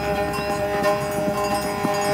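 Herd of horses running, hooves drumming on dry ground, under background music holding a steady drone.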